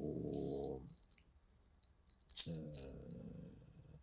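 A man's voice holding two drawn-out hesitation sounds: one at the start that lasts about a second, and a second one about halfway through that fades away. A short click comes just before the second.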